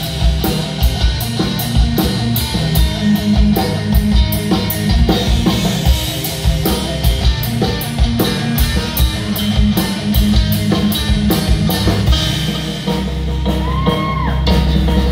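Live heavy metal band playing: distorted electric guitar, bass guitar and drum kit, with steady, regular drum hits throughout. Near the end the band holds a low note and a guitar note bends up and back down.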